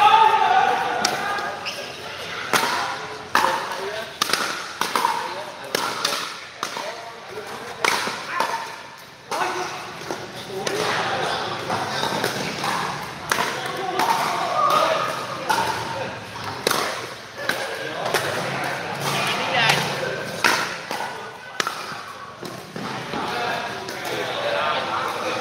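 Pickleball paddles hitting the plastic ball and the ball bouncing on the court, sharp irregular knocks coming from several courts at once in a reverberant hall, over people talking.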